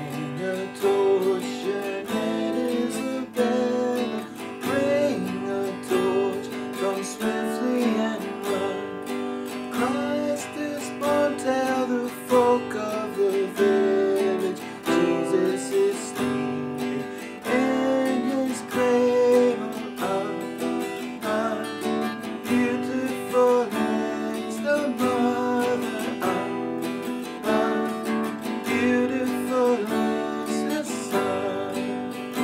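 Steel-string acoustic guitar strummed in a steady rhythm through a chord progression in G (G, Am, D, C), with a man's voice singing along over it.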